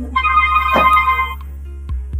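Background film music: a steady low drone with a bright keyboard-like chord that sounds for about a second just after the start.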